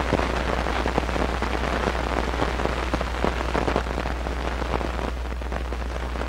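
Dense crackle and hiss of an old film's blank soundtrack, over a steady low hum, with no recorded sound on it.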